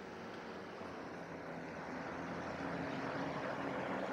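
A motor vehicle's engine running with road noise, growing gradually louder as it comes closer.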